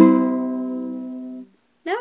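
A single strummed chord on an acoustic plucked string instrument, closing the song: it rings out and fades, then is cut off sharply about a second and a half in.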